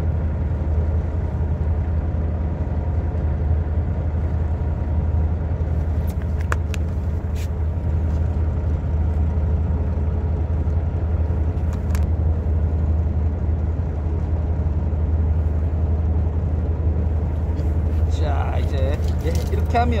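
Fishing boat's engine running at a steady idle: a constant low hum. A few light clicks come about six and twelve seconds in.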